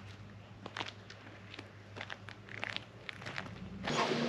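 Faint footsteps, light scattered steps about two a second, over a low steady hum.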